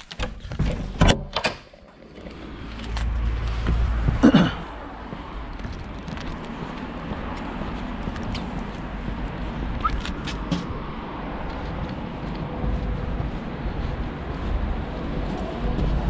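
Shop door latch clicking and the door opening, with a loud knock about four seconds in, followed by steady street noise with road traffic.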